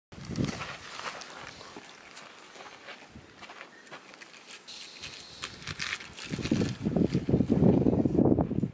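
Scuffs and taps of shoes and hands on a granite boulder as a climber starts up it, with a louder stretch of rough scraping noise in the last couple of seconds.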